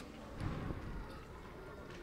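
Faint outdoor street background noise, an even hiss and low rumble with a slight swell about half a second in.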